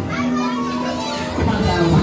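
Background music playing, with children's high excited voices calling out over it.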